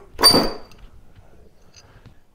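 A steel claw hammer's curved claw is swung into a rusty nail just under its head, giving one sharp metallic strike with a short ring about a quarter second in. The blow wedges the claw under the head to start the nail out of the wood.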